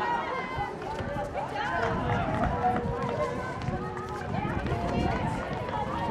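Netball players shouting and calling to one another during play, several voices overlapping, with running footsteps thudding on the hard court.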